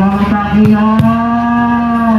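A voice, after a few short syllables, holds one long drawn-out note to the end.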